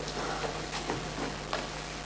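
Quiet theatre hall background, an even hiss with a few faint clicks.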